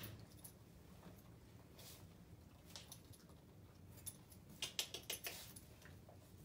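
Near silence broken by a few faint, sharp clicks and taps, with a quick run of four or five about four and a half seconds in: a dog-training clicker being clicked and treats dropped onto a wooden floor for a puppy.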